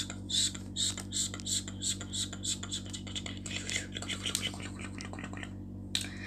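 A voice whispering short repeated syllables in a quick, even rhythm, about two to three a second, over a steady low hum.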